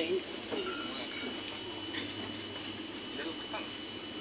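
Supermarket background: a steady hum with two faint, constant high-pitched tones, and distant voices murmuring.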